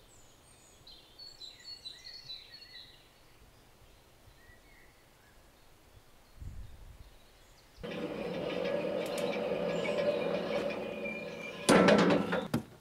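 Faint bird chirps, then from about eight seconds a steady running machine with a held hum, plausibly the portable sawmill's engine. It ends in a sharp loud knock just before the end.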